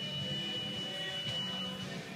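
Electric fencing scoring machine sounding a single steady high-pitched tone for about two seconds, the signal that a touch has been registered in a sabre bout. The tone cuts off near the end.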